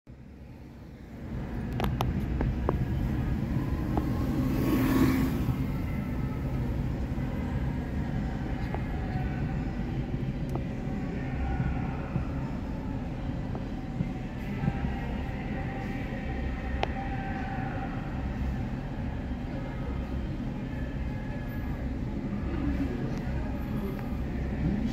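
Steady low rumble of engine and road noise heard inside a car's cabin in slow, stop-and-go city traffic. It swells about a second in, with a brief louder rush about five seconds in.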